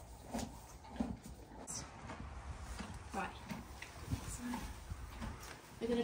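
Faint, scattered knocks and rustles of horse tack being handled while a saddle is fitted, over a low steady rumble.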